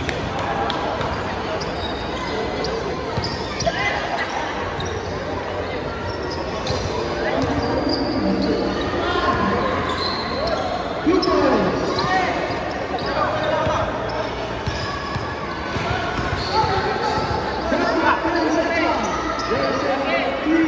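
Basketball bouncing on a hard tiled floor during live play, with players and onlookers calling out throughout; the sound echoes in a large hall.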